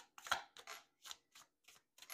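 Faint short crisp ticks repeating at an even pace, about three a second.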